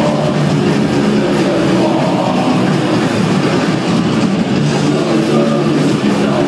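Hardcore punk band playing live: distorted electric guitars, bass and drums in a loud, dense, unbroken wall of sound.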